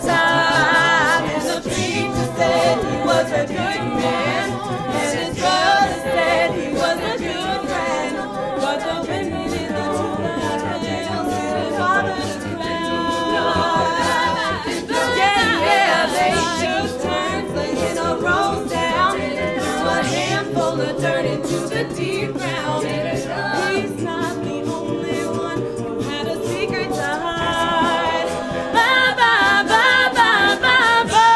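A mixed-voice a cappella group singing in several parts with no instruments, low sung bass notes under the harmonies, continuing without a break.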